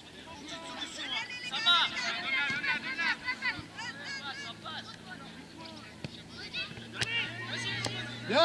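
High-pitched children's voices shouting and calling across a football pitch, busiest in the first half, with a single sharp knock about seven seconds in.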